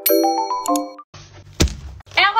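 A short chiming jingle of several bright bell-like notes, which cuts off about a second in. Faint room hiss follows, with a single sharp knock near the end.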